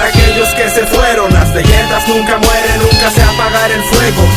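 Mexican hip hop track playing: a rap beat with steady drums and bass under a melodic line, in a short stretch between rapped sections.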